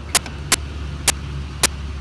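A vehicle engine idling as a steady low hum, with sharp clicks about twice a second over it.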